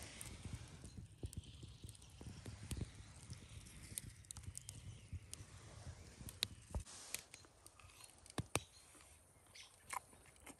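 Campfire coals crackling faintly, with scattered sharp pops and clicks, a few louder ones past the middle.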